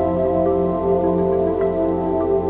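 Slow ambient music of held, layered tones, with a few faint light clicks scattered over it, crackling added in as nature sound.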